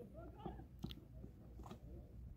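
Quiet open-air sound with faint distant voices and two short, sharp clicks about a second apart, the first a little under a second in.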